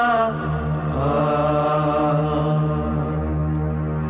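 Background music of slow chanting: a voice holding long notes over a steady low drone, with a new phrase starting about a second in.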